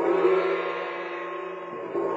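A large gong ringing with many overlapping steady tones, swelling in the first moments and slowly fading, then struck again right at the end.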